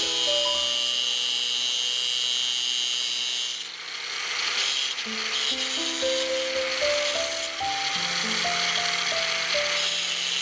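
Angle grinder with a thin cut-off disc cutting through the tip of a steel self-drilling screw: a high, steady grinding whine that breaks off just under four seconds in, then comes back in shorter cuts. Background music plays throughout.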